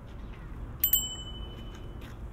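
A small metal bell struck twice in quick succession, with a bright ring that dies away over about a second.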